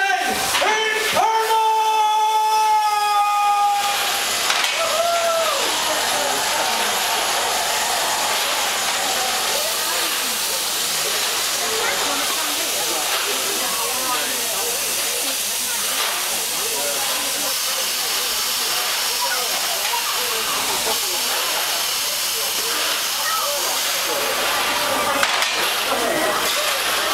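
The Man Engine, a giant mechanical miner puppet, venting vapour with a steady loud hiss, with crowd voices underneath. A held whistle-like tone sounds over the first few seconds, then the hiss takes over.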